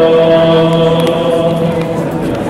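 Male vocal group singing a chant, several voices holding one long chord that fades out near the end.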